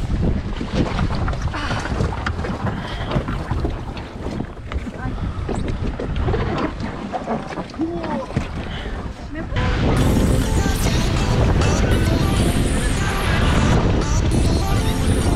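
Wind buffeting an action camera's microphone over water moving around an inflatable raft, with faint voices. About ten seconds in the sound jumps suddenly to a louder, fuller rush.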